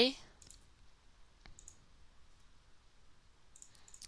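A single faint click of a computer mouse button about one and a half seconds in, against near-silent room tone.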